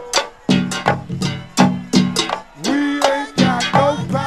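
Live go-go band music: sharp drum and percussion hits in a broken-up rhythm, with pitched instrument notes between them and one held note about three seconds in.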